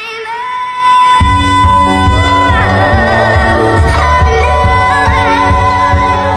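Pop song with a female singer: a long held sung note, then a heavy bass beat comes in about a second in.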